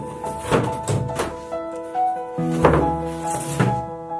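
Stiff black foam boards knocking and thudding against a tabletop about five times as they are handled and fall flat, over gentle piano background music.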